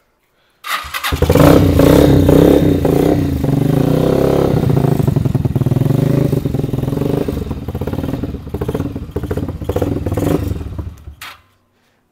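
Custom chopper-style motorcycle with a homemade twin-pipe exhaust starting up under a second in, revved just after it catches, then running steadily until it is switched off about eleven seconds in. The exhaust note is not very loud and rather refined.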